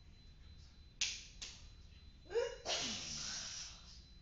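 A person's non-speech breathing sounds: two sharp breath bursts about a second in, a short rising voiced cry just after two seconds, then a long hissing exhale with a falling voice lasting about a second.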